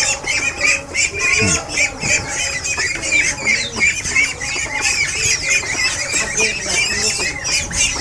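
Chicks and ducklings peeping together: many quick, high, overlapping peeps with no break.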